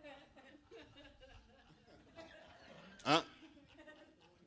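Soft chuckling and laughter from a small audience, then a man's loud, rising "Huh?" about three seconds in.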